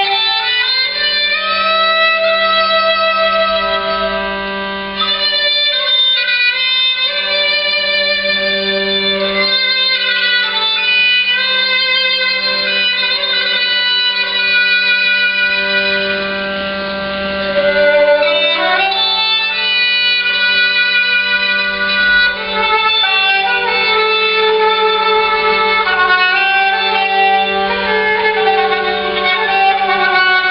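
Kamancheh and viola playing an Armenian folk melody without voice: a bowed, ornamented line with vibrato over a steady low drone.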